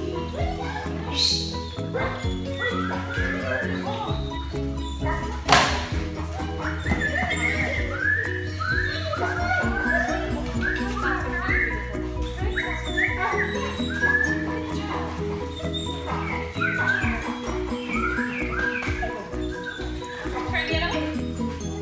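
Background music, with a run of short, high whines and yelps from dogs starting about seven seconds in. A single sharp knock comes about five and a half seconds in.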